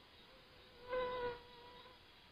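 A flying insect buzzing close to the microphone: a steady-pitched hum that is loud for about half a second about a second in, then fades away.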